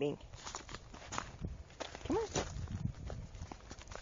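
Irregular crunching footsteps on a gravel path, with a voice calling 'come on' about two seconds in.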